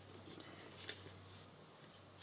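Faint handling sounds of a paper envelope being slid and settled on a gridded craft mat, with a light tick about a second in.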